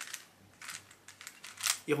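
Plastic 3x3 puzzle cube being scrambled by hand: its layers turning with a handful of quick, light clicks.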